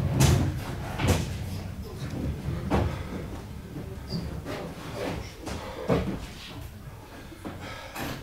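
A coffin being carried in and handled: a series of irregular knocks and thumps, the loudest near the start and about a second in, with softer bumps following every second or two.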